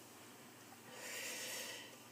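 A faint breath of about a second, drawn in near the middle of an otherwise near-silent pause.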